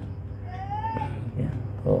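A cat meowing once, a single rising call about half a second in.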